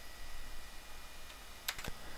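Faint background hiss, then a computer mouse button clicked once near the end: two quick ticks, press and release.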